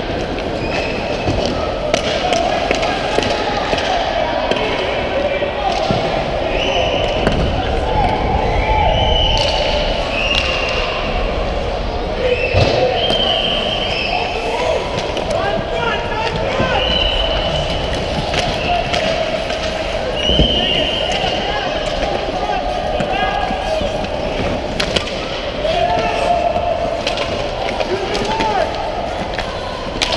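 Youth ice hockey play heard from a skating referee: sharp clacks and knocks of sticks, puck and boards scattered through, over a steady din of shouting voices and skates on ice.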